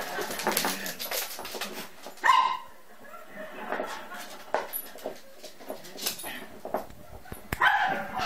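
A dog making short, high cries that sound like a cat's meow: a loud one about two seconds in and another near the end, with smaller sounds between.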